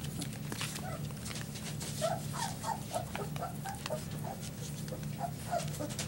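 Three-week-old Border Collie puppies whimpering: a quick run of short, high squeaks from about two seconds in until near the end, with faint clicks of mouths and paws.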